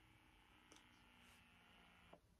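Near silence, with two faint clicks about a second apart.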